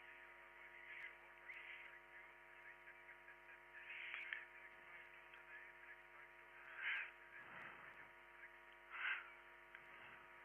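Near silence with a faint, steady electrical hum in the radio audio, made of many evenly spaced tones. A few faint brief sounds come about four, seven and nine seconds in.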